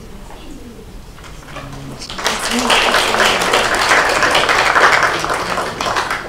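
An audience applauding. The clapping starts about two seconds in and is loud, a dense patter of many hands.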